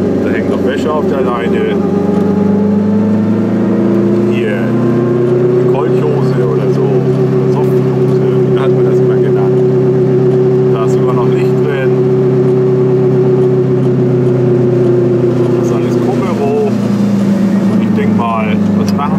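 Goggomobil's air-cooled two-stroke twin engine heard from inside the small car. It rises in pitch over the first few seconds as the car picks up speed, holds a steady note while cruising, then drops off near the end.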